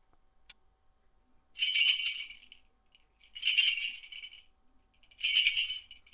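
Small metal bells jingling in three separate shakes, each under a second long and about two seconds apart.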